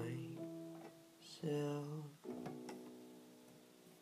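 Slow synthesizer chords in an instrumental passage, each struck and left to fade away, with new chords about a second and a half and two and a quarter seconds in.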